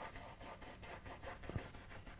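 Faint scratching of paintbrush bristles stroking oil paint onto a canvas, in many quick small strokes, with a light tap about one and a half seconds in.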